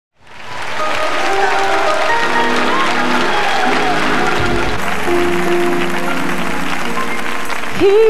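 A large live audience applauding and cheering over live gospel music, fading in from silence during the first second. A voice starts a sung note, sliding up into it, at the very end.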